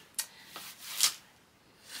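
A plastic-wrapped hardcover book box set being handled: light rubbing of the wrap and about three soft knocks, the last about a second in.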